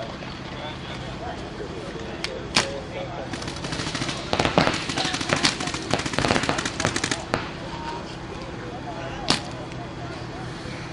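Paintball markers firing: single pops about two and a half seconds in, then rapid strings of shots for about three seconds in the middle, and one more pop near the end.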